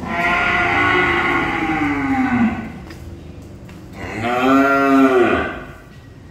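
Cattle mooing twice: a long call that drops in pitch at its end, then a shorter call about four seconds in that rises and falls.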